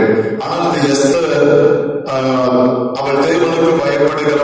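A man's voice preaching into a handheld microphone in an Indian language, continuous with some long drawn-out syllables and short pauses about two and three seconds in.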